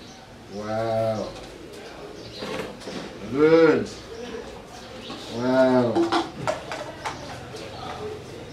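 Three drawn-out wordless hums, each rising and falling in pitch and spaced a couple of seconds apart, with faint light clicks of paper and plastic cups being handled.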